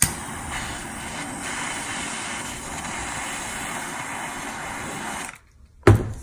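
Heat gun blowing steadily on an X-Acto knife blade to heat it, then switched off abruptly about five seconds in. A short knock follows just before the end.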